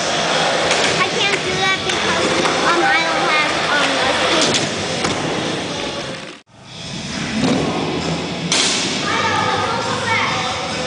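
Indoor skatepark noise: skateboard wheels rolling and boards thudding on the ramps, with voices echoing in the hall. The sound drops out briefly about six and a half seconds in.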